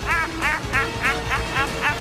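A man's high-pitched cackling laugh in quick repeated bursts, about three or four a second, each rising and falling in pitch.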